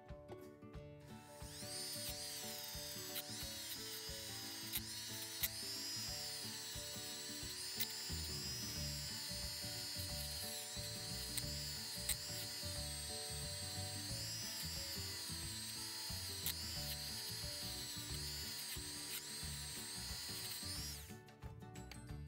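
Dremel rotary tool fitted with a soft plastic-bristled brush, running at about two-thirds speed against a zinc die-cast bus casting to scrub out loose paint flecks. It gives a high whine whose pitch dips and rises as the brush is pressed on and eased off, starting about a second in and stopping shortly before the end.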